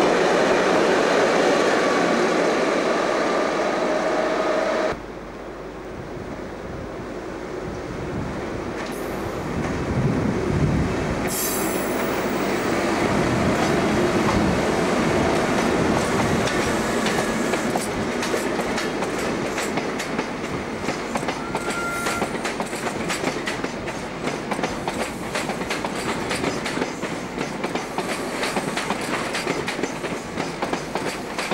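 An electric locomotive runs past at close range with a steady whine. After a sudden cut about five seconds in, a locomotive-hauled electric train rolls past, its wheels clicking quickly and evenly over rail joints and pointwork through the second half.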